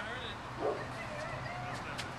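A dog barking, loudest about two-thirds of a second in, over faint voices.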